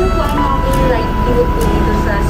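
Background music with a steady low rumble underneath. A held tone comes in about half a second in.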